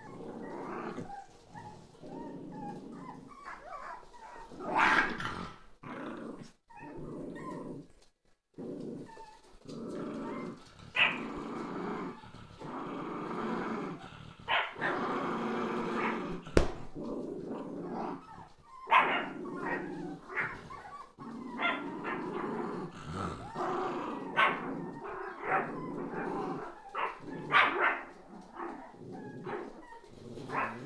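Jack Russell Terrier puppies growling and yipping as they play, with short, sharp barks breaking in again and again, the loudest about five seconds in and near the end.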